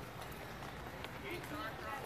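Faint, indistinct voices of people nearby over outdoor background noise, with a few light footstep-like clicks on pavement.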